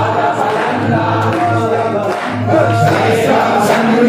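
A group of voices singing a devotional chant together, over a steady low hum.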